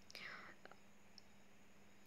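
Near silence: a faint intake of breath at the start, then room tone.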